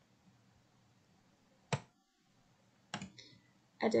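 Computer mouse clicks over quiet room tone: one sharp click a little before halfway, another near the end.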